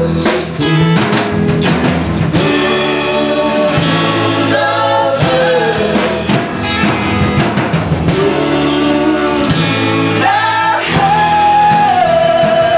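Live unplugged band performance: a singer over guitar and drum accompaniment, ending on a long held sung note.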